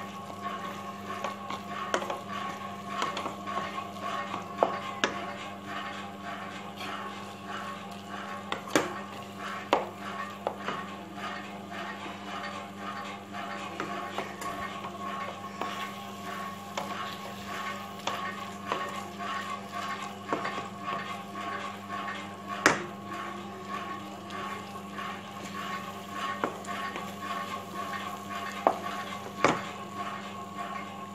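Spatula scraping and tapping against a pan while noodles are stirred, with a few louder knocks, over a steady hum.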